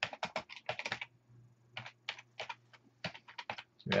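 Typing on a computer keyboard: quick, irregular runs of keystrokes with a short pause about a second in, over a faint low hum.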